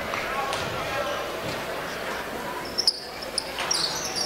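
Basketball free throw in a gymnasium over a steady crowd murmur. Near the end the ball hops on the rim a couple of times before dropping in, and sneakers squeak as players move into the lane.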